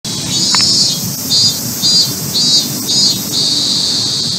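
Cicadas buzzing in high pulses about twice a second, then settling into a steady buzz a little over three seconds in.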